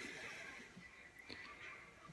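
Near silence: faint room tone with a couple of faint clicks a little over a second in.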